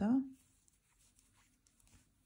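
Faint, soft scratching and rustling of a crochet hook drawing cotton yarn through single crochet stitches, with a few light ticks.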